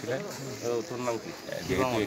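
A man speaking to the camera outdoors, his voice the only clear sound.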